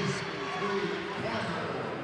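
Gymnasium game sound during a basketball game, with a voice holding one drawn-out, steady note for about the first second over the court noise of the hall.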